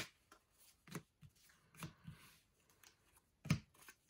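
Small kraft-paper envelopes being handled and shuffled through by hand: a string of short papery taps and slides, the loudest about three and a half seconds in.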